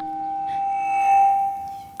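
A single steady pure tone, held without change in pitch, that swells a little about a second in and fades near the end.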